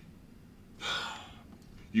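A man takes one quick, audible breath in through the mouth about a second in, a gasp-like intake before speaking again.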